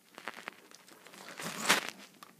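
Rustling, crinkling handling noise with a few light clicks, and a louder rustle near the end.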